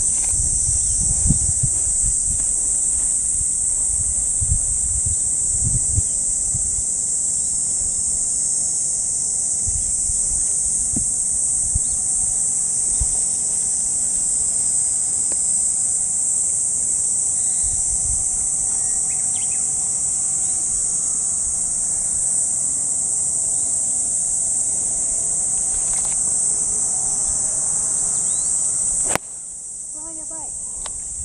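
A steady, high-pitched chorus of insects, cutting off abruptly near the end. Low wind rumble on the microphone comes and goes in the first few seconds.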